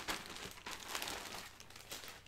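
Clear plastic wrapping crinkling and rustling in irregular bursts as it is handled and pulled open around a folded shirt, dying down near the end.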